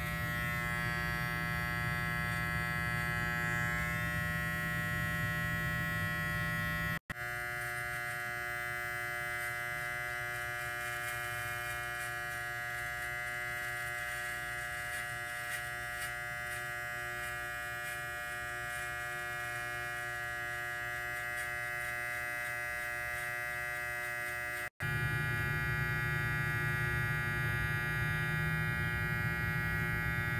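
Electric T-blade hair trimmer running with a steady buzz as it edges the hairline. The buzz drops out for an instant twice, about a quarter and about four fifths of the way in, and sounds quieter and higher in the middle stretch.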